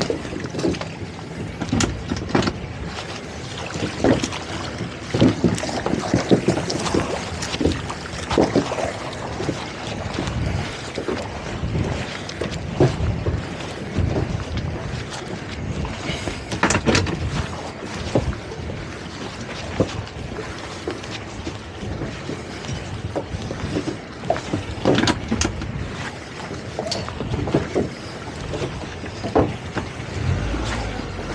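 Wind buffeting the microphone and water slapping against the hull of a small outboard boat on open water, in uneven gusts and knocks.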